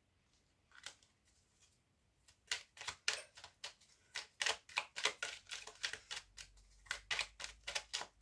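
A deck of oracle cards being shuffled by hand, a quick irregular run of crisp card clicks and slaps. It starts about two seconds in after a near-silent pause and goes on steadily.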